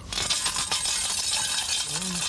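Coins rattling inside a metal collection tin as it is shaken, a dense continuous jingle that starts suddenly.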